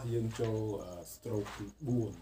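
A man's voice talking in short phrases; only speech.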